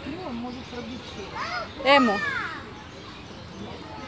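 Speech only: people talking, a child's voice among them, over faint outdoor background noise.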